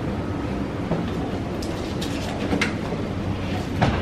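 A steady low rumble, with a short hiss from a hand trigger spray bottle near the end.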